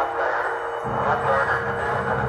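A crackly, narrow-band radio transmission of an astronaut's voice, hard to make out. A low musical bed comes in underneath about a second in.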